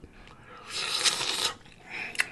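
A single wet, crackly mouth noise from a person eating a sour dill pickle, lasting just under a second, near the middle.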